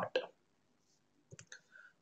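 A few quick, faint clicks about a second and a half in, made on the computer as the presentation slide is advanced to the next section.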